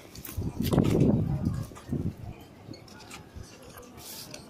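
Wind buffeting and handling noise on a handheld phone's microphone: a rumbling rush about a second in, with rubs and knocks as the phone is jostled, then quieter.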